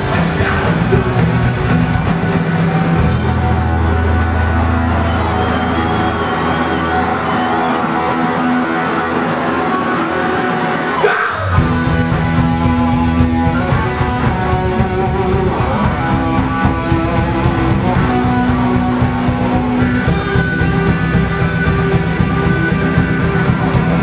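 Punk rock band playing live, with electric guitars and drums. The band cuts out for a moment about halfway through, then comes back in.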